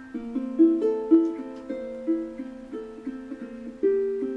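Custom Lichty tenor ukulele, with a sinker redwood top and Brazilian rosewood back and sides, fingerpicked: a quick run of single plucked melody notes over a lower note that keeps ringing.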